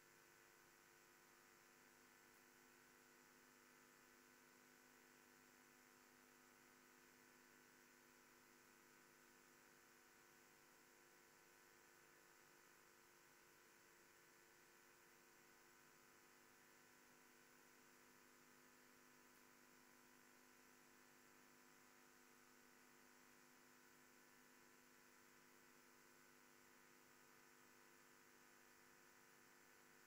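Near silence: a faint, steady electrical hum.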